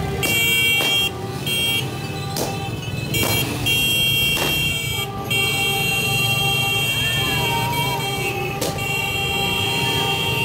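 Several small motorcycles running at low speed, with a horn sounding in long held blasts that break off briefly every second or few.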